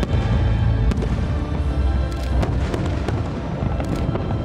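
Aerial firework shells bursting over music, with sharp reports about a second in, a quick cluster a little past two seconds, and another near the end.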